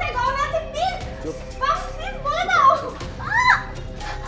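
A child's high-pitched voice, rising and falling in pitch, over background music with a held note.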